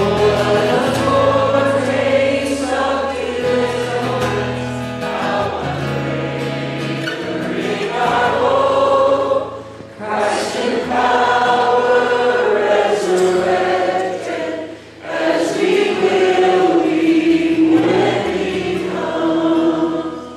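Congregation singing a hymn chorus together with a male worship leader, accompanied by acoustic guitar. The sound drops briefly twice between lines and fades as the song ends.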